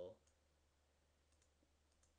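Near silence with a few faint computer mouse clicks, a single one a little way in and a couple more close together past the middle.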